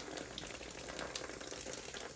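Water from a garden-hose spray wand running down a shingled roof mock-up and pouring off its metal drip edge: a faint, steady sound of running water.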